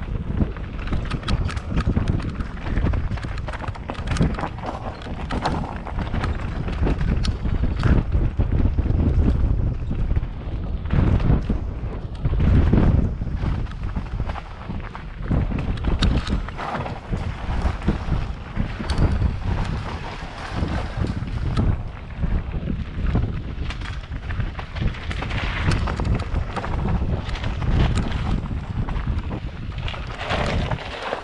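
Mountain bike riding down a rough dirt trail, heard from a camera on the bike or rider. Wind buffets the microphone while the bike rattles and knocks over the bumps in quick, irregular succession.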